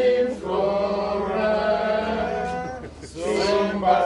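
Men's voices singing their old school anthem together, with long held notes and a short break about three seconds in; some of the singers are struggling to recall the words.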